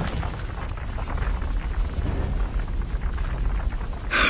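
Large boulder rolling over rocky ground and railway track: a continuous deep rumble with scattered small clattering of stones.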